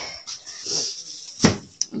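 A dog barks once, short and loud, about one and a half seconds in, over faint handling noise.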